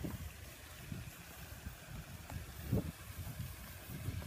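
Wind rumbling on a handheld phone's microphone outdoors, uneven and low, with soft handling bumps, one a little louder near the three-second mark.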